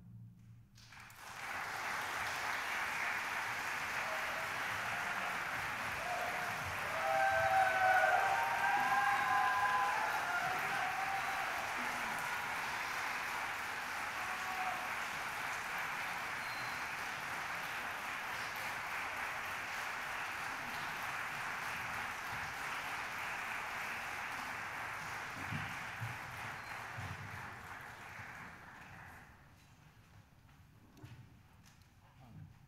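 Concert audience applauding after the final chord of an orchestral symphony. A few high cheering whoops rise over the clapping about seven to ten seconds in, and the applause thins and fades out near the end.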